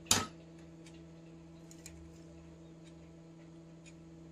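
A brief, sharp rustling noise at the very start, then a quiet, steady low hum with a few faint ticks.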